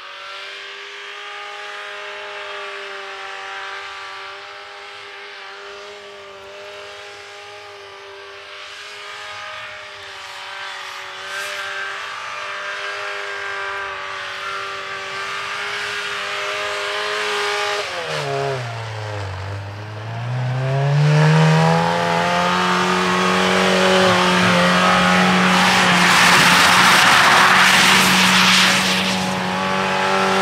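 A 2017 Jeep Renegade Trailhawk's 2.4-litre four-cylinder engine is held at steady revs while the wheels spin through deep snow in donuts. About eighteen seconds in the revs drop sharply and climb back. The engine then runs higher and louder, with a loud rush of tyres churning snow near the end.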